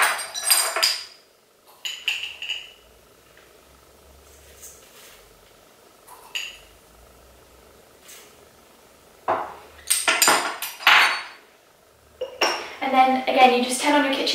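Measuring spoons clinking and clattering against a stainless steel stand-mixer bowl as salt is spooned in. The clinks come in short clusters, at the start and again about two-thirds of the way through, with quiet gaps between.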